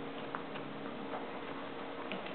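A few faint, scattered light clicks from a chinchilla at its wire cage, over a steady hiss and a low hum.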